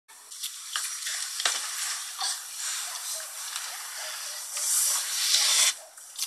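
Crinkling and rustling of handled packaging, with sharp crackles throughout, growing loudest for about a second near the end.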